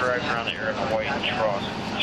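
Indistinct voices talking, with no clear words, over a steady vehicle-engine drone.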